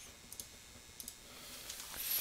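Faint computer mouse clicks: two quick double clicks about 0.7 s apart, as the slide is advanced, over quiet room tone. A soft hiss builds near the end.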